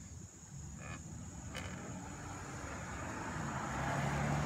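A pickup truck approaching on the road, its engine and tyre noise growing steadily louder, with a low engine note coming through near the end.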